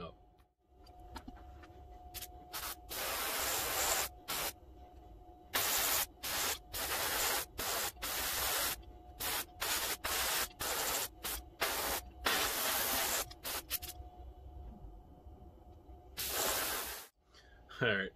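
Airbrush spraying blue paint onto a resin crankbait's mask in a dozen or so bursts of hiss, each from a fraction of a second to about a second long, with short pauses between. A faint steady hum runs underneath.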